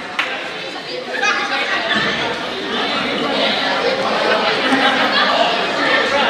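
Many people talking over one another in a school gymnasium, their voices echoing in the large hall.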